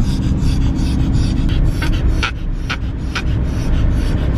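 Car cabin road and engine rumble, with a small Yorkshire terrier panting in short sharp breaths, about two a second in the second half. The dog is breathing oddly after surgery, which the owner puts down to the painkiller.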